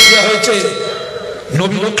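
A sudden metallic clang at the very start that rings on in several high tones and fades over about a second, under a man's preaching voice.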